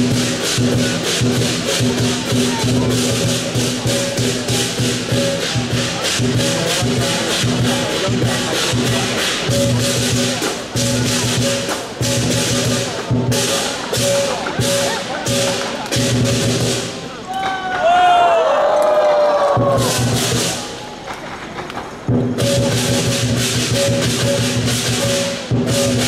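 Chinese lion dance percussion (drum, gong and cymbals) playing a fast, steady rhythm with the gong ringing throughout. About two-thirds of the way through the playing breaks off for a few seconds while a voice calls out, then the rhythm starts up again.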